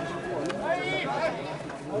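Voices calling out across a football pitch during play, fainter than the talk around them.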